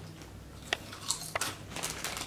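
Someone eating potato chips: a few short, sharp crunches.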